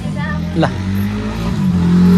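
An engine running with a steady low hum that grows louder about a second and a half in, with a short spoken word over it.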